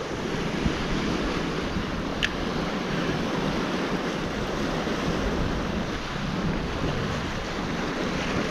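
Surf washing over a rocky shoreline, a steady rush of water with wind buffeting the microphone. A single brief click about two seconds in.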